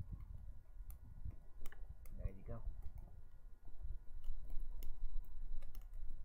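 Dry-grass tinder nest catching fire, crackling with scattered sharp snaps that come more often in the second half, over a low steady rumble. A brief voice sound about two seconds in.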